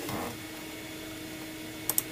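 Steady low background hum with a faint steady tone, as from a running appliance or fan in a small room. A couple of short clicks come just before the end.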